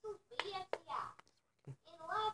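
A child's voice in short bursts, with two sharp clicks in the first second.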